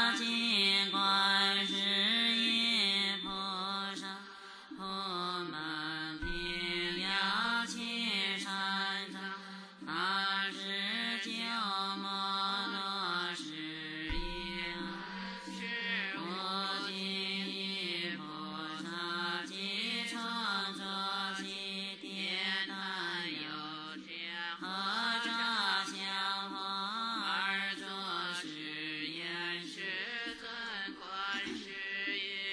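Buddhist chanting sung to a slow, flowing melody with musical accompaniment, in continuous phrases without pauses.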